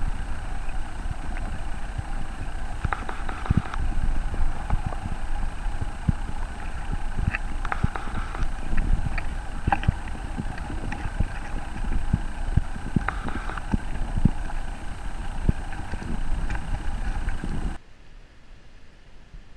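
Stream water heard underwater through a camera's waterproof housing: a steady, muffled rumble with frequent sharp clicks and knocks.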